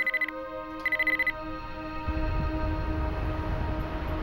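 Two short trills of high electronic beeping from a computer-terminal sound effect as data appears on the screen, over a sustained music drone. About halfway through, a low rumble of road noise comes in.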